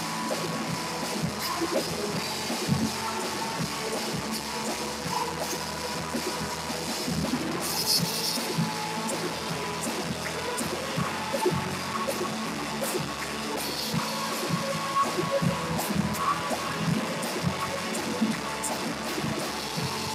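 Live worship band music with a drum kit, with a cymbal crash about eight seconds in.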